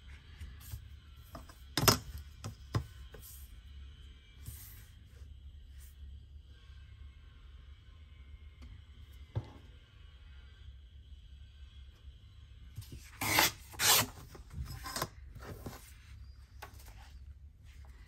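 Paper sheets sliding and rubbing on a cutting mat while a steel ruler is laid against them, with a few sharp taps and a louder burst of paper rustling near the end.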